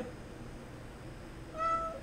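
A house cat meows once, a short, fairly level call about a second and a half in, over quiet room tone.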